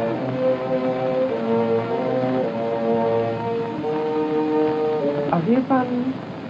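Orchestral film score: bowed strings hold slow, sustained chords that change every second or so. A man's voice starts speaking near the end.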